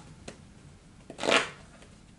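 Tarot cards being handled: a single brief swish of cards about a second in, with a faint click just before.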